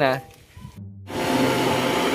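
Electric blower fan of an inflatable tube man running, a loud, steady whirring rush that starts suddenly about a second in.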